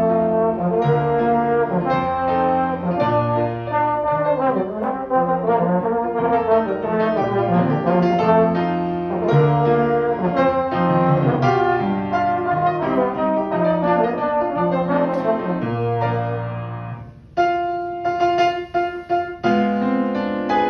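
Slide trombone playing a solo melody over piano accompaniment. About three seconds before the end the trombone stops and the piano carries on alone with a series of chords.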